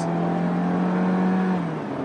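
Peugeot 3008's 1.6-litre turbocharged four-cylinder engine pulling under light throttle as the car accelerates, its note rising steadily. The note then drops back about one and a half seconds in.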